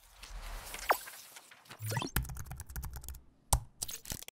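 Logo-animation sound effects: a whoosh with a quick falling swoop about a second in, then a rapid run of sharp clicks, a single loud hit near the end and a few last clicks.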